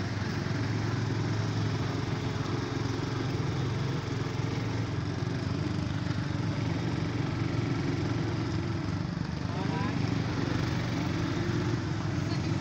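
Small Honda motorcycle engine running steadily at low speed, heard from the rider's seat, with the engines of other motorcycles close by.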